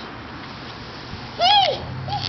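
A toddler's single short, high-pitched vocal call, its pitch rising then falling, about one and a half seconds in.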